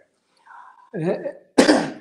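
A person coughs once, a short sharp cough near the end, after a brief murmur of voice.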